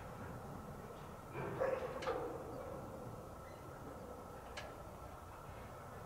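Distant freight train of covered hoppers rolling across a long bridge: a steady low rumble with a faint high tone and a few short clanks, the loudest cluster a little over a second in.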